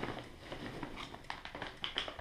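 A hand rummaging through foam packing peanuts in a cardboard box, making a run of small, irregular rustles and clicks.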